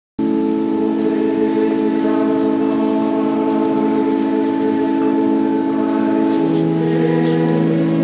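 Organ holding a long sustained chord, the harmony shifting and a lower bass note coming in about six and a half seconds in.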